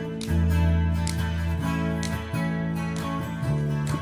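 Electric bass guitar and two strummed acoustic guitars playing live without vocals, the bass holding low notes that change every second or so under steady strumming.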